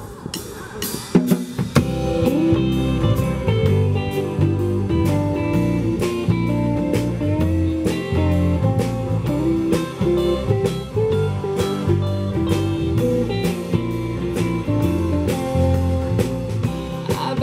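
Live band playing the instrumental intro of a song: electric guitar, accordion, bass and a drum kit in a steady beat, coming in about a second and a half in.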